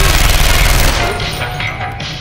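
Film soundtrack: a loud, dense burst of noise that lasts about a second and then fades, over synth music.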